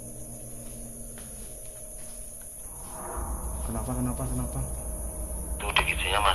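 Night insects chirring steadily at a high pitch. From about halfway a low, muffled voice-like sound that was heard as a moan rises under them. Near the end a handheld two-way radio crackles in loudly with a voice.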